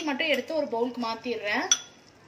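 A metal spoon clinks once against the aluminium cooking pot, ringing briefly, near the end, over a woman speaking.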